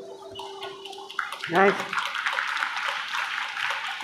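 The last chord of an electronic keyboard fades out. About a second later an audience starts applauding with dense, steady clapping, and a voice calls out briefly in the middle of it.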